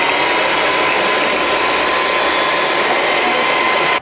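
Electric hand mixer running at a steady speed with a constant whine, its beaters creaming butter with icing sugar for butter icing. It stops abruptly at the end.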